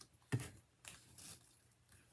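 A few faint, short rustles and soft taps of satin ribbon and card stock being handled as the ribbon is wrapped around a paper card panel.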